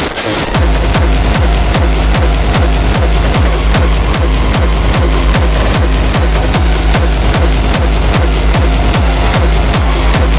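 Downtempo hardcore electronic dance music: a heavy distorted kick drum on a steady fast beat, each hit dropping in pitch, under a dense synth layer. The track gets louder about half a second in.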